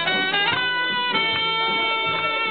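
Live mariachi band playing, with long held notes on a wind instrument that shift pitch a few times.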